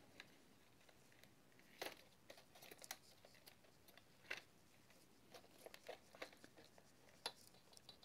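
Faint, scattered clicks and knocks of a foldable drone's plastic arms being swung open by hand, a dozen or so light taps over a quiet background.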